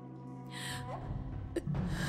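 Soft score of held tones, with a woman's audible breaths: a sharp intake about half a second in and another breath near the end. A low drone comes into the music just before the second breath.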